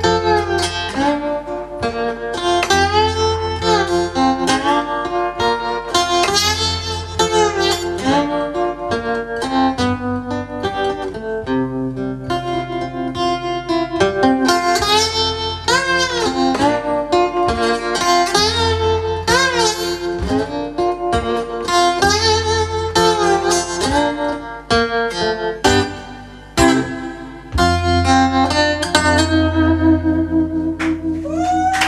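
A solo acoustic guitar plays an instrumental passage of a slow song, plucked notes ringing over a steady bass line, with no voice.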